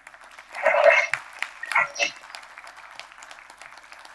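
Applause from a small, scattered audience: separate hand claps heard in a thin patter, loudest about a second in, then settling into a steady, lighter clapping.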